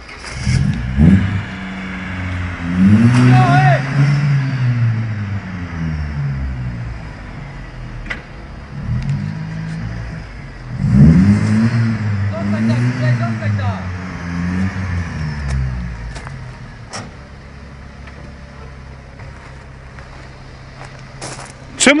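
Small hatchback's petrol engine revved hard in repeated surges, its pitch rising and falling, while the car strains at low speed. It settles to a steady idle for the last several seconds.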